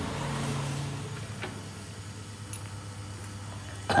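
A loose fan-belt tensioner off a Peugeot 206 being moved by hand, giving a faint click about one and a half seconds in from its worn, sloppy pivot, over a steady low hum.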